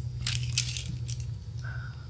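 A few short rustling, scraping handling noises as paint supplies are picked up and set down on the worktable, over a steady low electrical hum.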